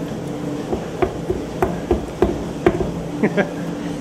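Steady machine hum with about half a dozen irregular knocks and clanks as a wine-stained pump-over hose is handled against the wooden fermentation vat.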